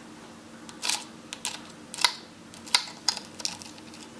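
A spoon cracking the hard caramelized sugar crust of a crème brûlée in a ceramic ramekin: a series of about seven sharp, brittle cracks and taps starting about a second in.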